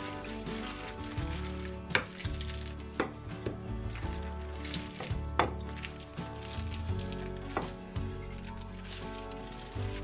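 Wooden rolling pin rolling dough out on a wooden cutting board, giving several irregular sharp knocks, the loudest about two seconds in and again about five seconds in. Background music plays underneath.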